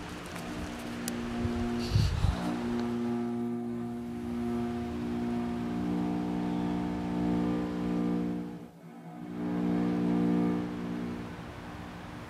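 Dark film-score music: low notes held as a steady drone. A deep boom comes about two seconds in, and the music fades almost away and swells back about three-quarters of the way through.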